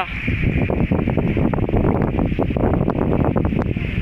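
Wind buffeting the microphone: a loud, low rumble with irregular short knocks and rustles.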